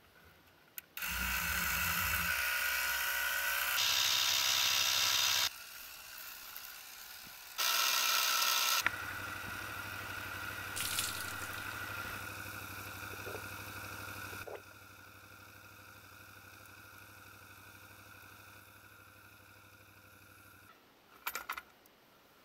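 Small electric tyre pump running with a steady whir. It starts about a second in, cuts off and starts again, then runs on more quietly and stops shortly before the end.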